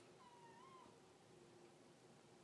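A kitten's single faint, high meow, about half a second long, a moment in, wavering and lifting at its end.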